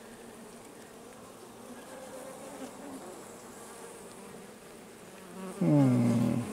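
Honeybees on an open hive frame buzzing with a steady, even hum. A man's voice breaks in briefly near the end.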